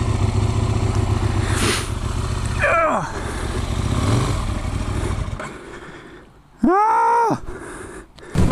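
Aprilia RSV1000's V-twin engine running at low speed with a low pulsing rumble as the bike is worked through deep snow; the rumble fades away after about five seconds. Near the end comes a short, loud pitched sound that rises and then falls.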